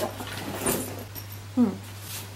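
Rustling and light handling noises as things are moved about in a search. Near the end comes a woman's short, falling "hmm", the loudest sound. A steady low hum runs underneath.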